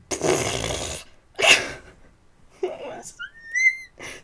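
A woman's voice giving excited, wordless sounds: a long breathy exhale, a sharp breath, then a short high squeal that rises and falls in pitch.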